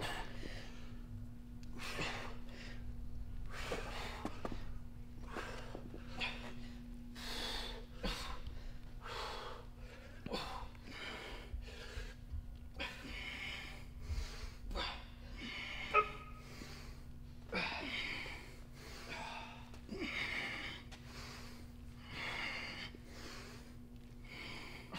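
A man breathing hard, with a forceful breath about every second in time with his weight swings. A steady low hum runs underneath, and a single sharp click comes about two-thirds of the way through.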